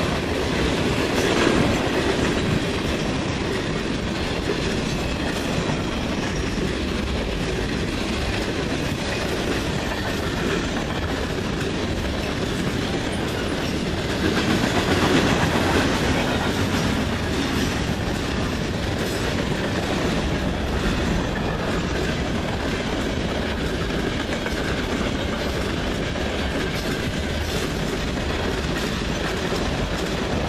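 Freight cars of a manifest train rolling past at speed: a steady rumble with wheels clicking over the rail joints, swelling briefly louder about halfway through.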